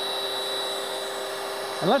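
Steady electric whirr from the Kitchen Champ's motor base, fitted with its meat-grinder attachment, with a constant high whine over a low hum and no change in speed.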